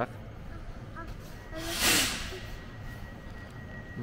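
A single burst of compressed air hissing from a standing electric passenger train, loudest about two seconds in and lasting under a second. It is taken for the train's pneumatic brakes releasing.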